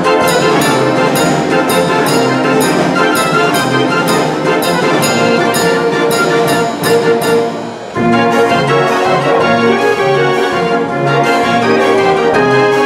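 Dutch street organ, a 52-key Verbeeck/Verdonk draaiorgel fitted with an added set of trombones, playing a tune with a steady beat. The music drops away briefly just before eight seconds in, then carries on.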